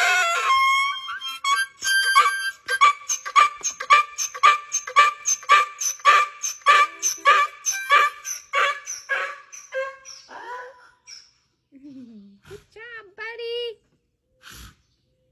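A harmonica chord at the start gives way to a donkey braying, a long rhythmic run of hee-haws about two or three a second that fades out around ten seconds in. A few short wavering sounds follow near the end.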